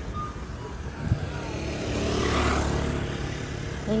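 A motor vehicle passing on the street, its engine and tyre noise swelling to a peak about two and a half seconds in and then easing off. A short knock comes about a second in.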